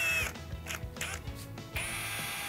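Electric drill driving a mixing paddle in a gallon can of two-part epoxy, pre-mixing the Part B component to lift any settled material. A steady whine cuts off about a quarter second in, and uneven mechanical noise follows.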